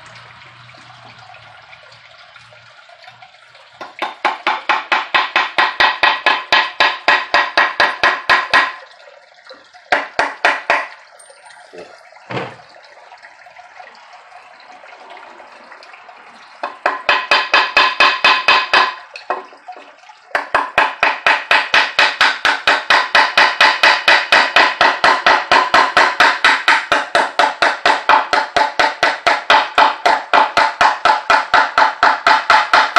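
Small claw hammer driving nails into a wooden board with rapid, light taps, about four a second. The hammering comes in runs: from about four seconds in to nearly nine, briefly around ten seconds, again from about seventeen to nineteen seconds, and steadily from about twenty seconds on.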